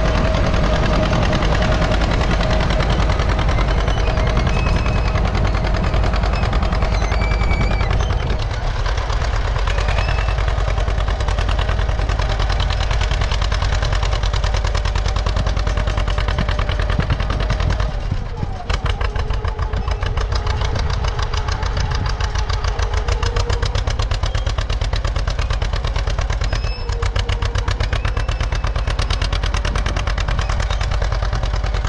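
A 1948 John Deere B's two-cylinder engine is popping in a fast, steady rhythm as it works under load pulling a three-bottom plow.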